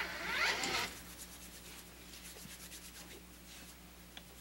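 A brief rustle in the first second, then a faint, soft rubbing of hands worked together for hand hygiene.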